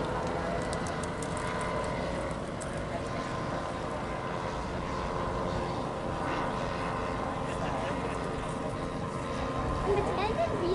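Three Zenoah 38 two-stroke petrol engines on a giant radio-controlled model aircraft in flight, droning steadily as several overlapping tones.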